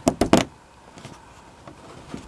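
A quick run of sharp plastic clicks as a Toyota under-car splash-panel fastener is shoved home onto its threaded stud.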